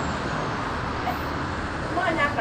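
Steady outdoor background noise of road traffic, an even wash with no distinct events.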